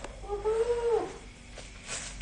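A single short, high whine, rising a little and then falling away, lasting under a second.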